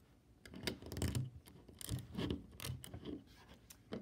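LEGO plastic bricks and plates being handled on a tabletop: a series of small, irregular clicks and rubs.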